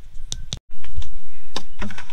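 A few light plastic clicks, then a brief dead dropout, then loud low rumbling handling noise with scattered knocks as the hand-held phone and the plastic bucket and funnel are moved about.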